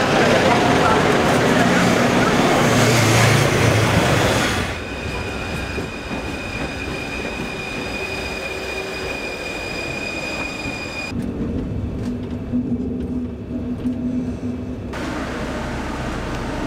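Paris Métro train moving through a station: loud rumbling noise at first, then a steady high whine for several seconds, and a low hum near the end.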